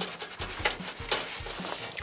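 A cloth rubbing and wiping over an acrylic sheet, an irregular scuffing with small ticks as the sheet is handled.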